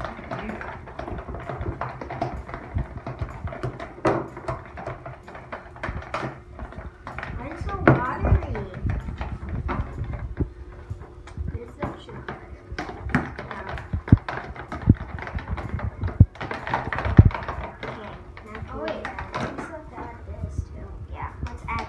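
Metal spoons stirring and scraping a thick glue mixture in plastic tubs, clicking and knocking irregularly against the sides and bottoms, with a few louder knocks.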